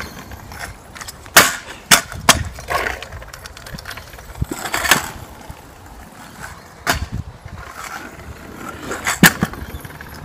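Stunt scooter's urethane wheels rolling over a concrete driveway during a fakie slider, with about half a dozen sharp clacks as the deck and wheels knock and scrape against the ground.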